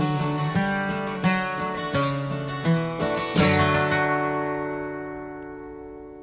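Acoustic guitar strumming a few closing chords of a folk song. The last chord, about three and a half seconds in, is left to ring and fade away.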